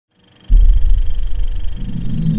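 Logo-intro sound effect: a loud, deep rumbling hit that starts suddenly about half a second in and is held, with a faint steady high ringing tone above it. Near the end the rumble shifts up into a lower-mid drone.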